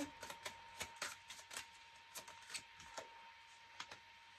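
Tarot cards being shuffled by hand: a quick run of light, irregular card clicks and flicks, thinning to a few scattered clicks in the second half.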